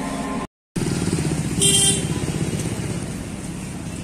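Busy street traffic with a motorcycle engine running close by, its rapid pulsing the loudest sound. A short horn beep comes about one and a half seconds in. The sound cuts out for a moment near the start.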